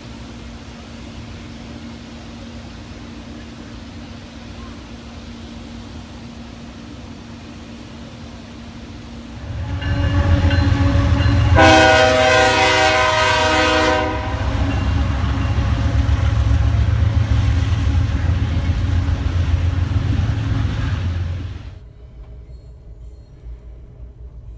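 A steady low hum with a faint constant tone, then about ten seconds in a loud train rumble starts. A train horn blows for about two seconds. The rumble cuts off about two seconds before the end, leaving a quieter hum.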